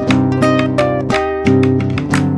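Acoustic guitar strumming chords in a song's instrumental introduction, each chord ringing on until the next stroke about every half second.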